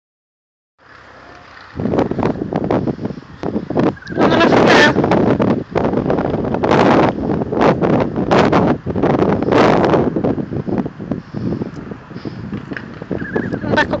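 Wind buffeting the microphone in loud, uneven gusts, with a voice faintly heard at times.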